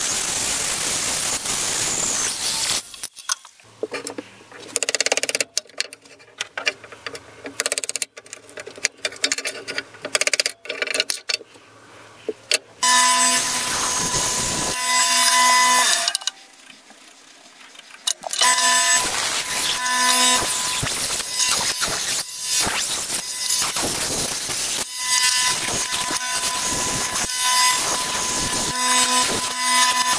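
Bench bandsaw cutting a wooden handle blank: a dense hiss of the blade through the wood with a steady high tone. The sound turns quieter and broken for several seconds, drops away for a couple of seconds past the middle, then the cutting resumes loudly.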